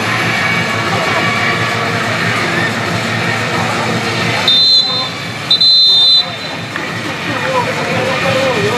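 Referee's whistle blown twice, a short blast and then a longer one, over a din of players' voices: the full-time whistle ending the match.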